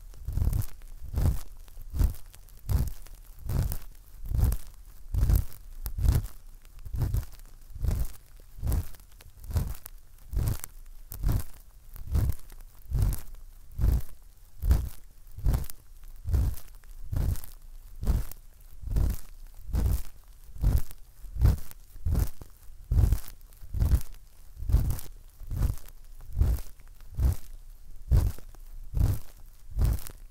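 ASMR head-patting sound: a hand stroking over a binaural dummy-head microphone in a steady rhythm, a little over one stroke a second. Each stroke is a soft rubbing swish with a low thump.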